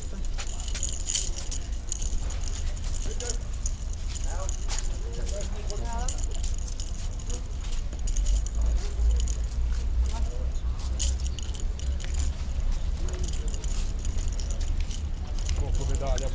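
Metal medals on ribbons clinking and jangling together as they are handled, in many light metallic clicks, over a steady low rumble.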